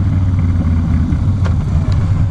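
Harley-Davidson Softail Springer's V-twin engine running steadily under way, its exhaust pulses dominating.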